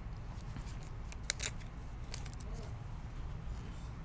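Foil trading-card packs and cards being handled: a scatter of short, sharp clicks and crinkles, bunched together about a second and a half and two seconds in, over a steady low room hum.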